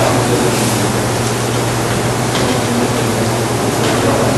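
Steady hiss over a low hum, with no other event standing out: the background noise of a lecture-room recording, from room ventilation and the recording chain.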